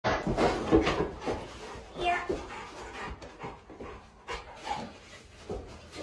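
Large dog panting, loudest in the first second.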